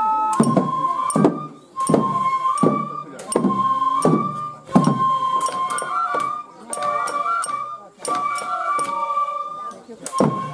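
Lion-dance music: a flute holds and shifts high notes over regular drum strokes struck several times a second, with voices singing or calling along.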